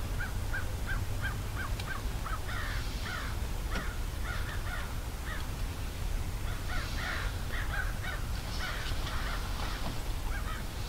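Birds calling repeatedly: a run of short, evenly spaced notes about three a second, then harsher, longer calls in clusters, over a steady low rumble.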